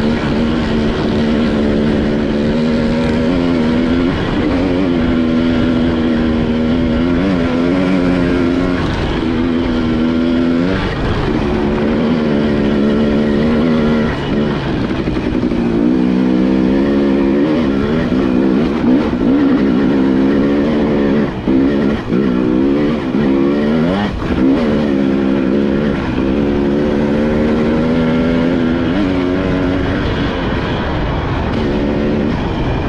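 KTM two-stroke dirt bike engine running under load, its pitch rising and falling as the throttle is worked and gears change, with a few brief drops in the engine note past the middle.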